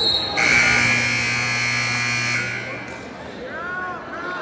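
Gym scoreboard buzzer sounding one steady, loud tone for about two seconds as the match clock runs out, marking the end of the period. Just before it there is a brief high tone, and voices pick up again near the end.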